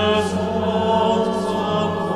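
Small choir singing, over sustained low organ notes, with the long ringing of a large stone church.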